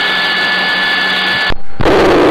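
Helicopter turbine and rotor noise heard through the crew's radio, a steady rush with a high whine. It cuts off abruptly about one and a half seconds in, followed by a short burst of duller noise.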